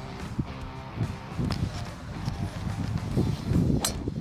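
Background guitar music, and near the end a single sharp crack of a golf driver striking a teed ball.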